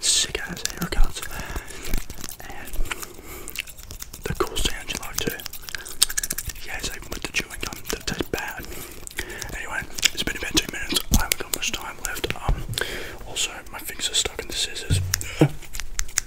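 A comb raked over and around a microphone's mesh grille very close up: a continuous run of fast, scratchy clicks from the comb's teeth.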